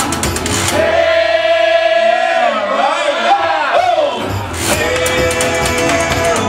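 Live blues from a washboard and a resonator guitar with male vocals. About a second in the playing drops out and one male voice holds a single long high note for over three seconds, bending and wavering near its end, before the washboard and guitar come back in.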